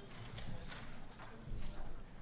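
Footsteps on a stage: a few hard, clicking steps over low room noise.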